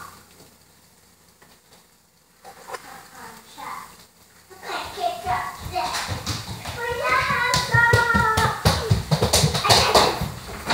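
A young child's high voice about seven seconds in, over a run of sharp taps and knocks. The first couple of seconds are quiet.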